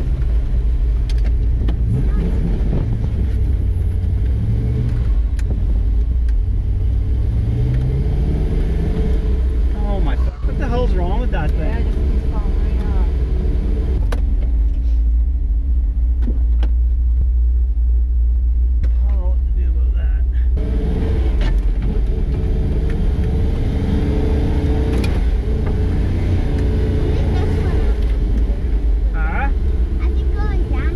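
Lifted 4x4 truck's engine running under load on the trail, rising in pitch with throttle a couple of times in the first third, then holding steady at one pitch for several seconds past the middle. Faint voices come through twice.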